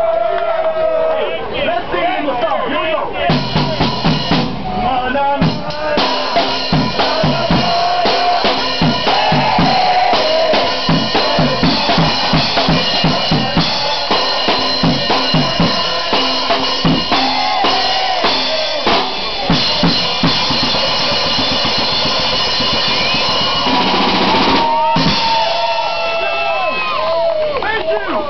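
A street drummer's drum kit played fast and hard, bass drum, snare and cymbals, with a crowd's voices shouting over it. The drumming starts a few seconds in and stops a few seconds before the end, leaving the crowd's voices.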